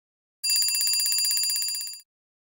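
Bell ringing in a rapid, even trill, used as an alarm-clock sound effect. It starts about half a second in and cuts off at the end.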